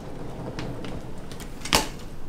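Hard-shell rolling suitcases handled on a tile floor: a low rumble with a few light clicks, then a sharp click near the end.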